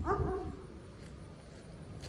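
A dog giving one short whine at the start, rising then holding for about half a second.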